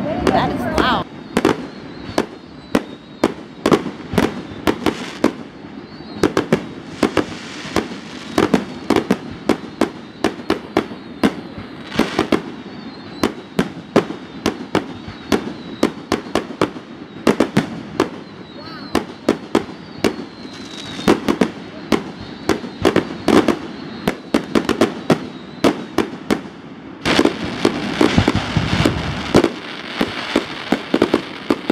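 Aerial fireworks going off in a continuous barrage: sharp bangs two or three a second, with crackling between them, growing denser and louder near the end.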